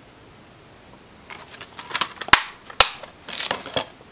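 Plastic DVD keep cases being handled: rustling and knocking, with two sharp plastic clicks about half a second apart as an open case is snapped shut and the next one picked up.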